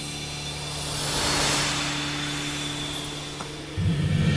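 Dramatic film soundtrack: a steady low synthesized drone under a hissing whoosh that swells to a peak and fades away, with deeper, louder tones coming in just before the end as the score builds.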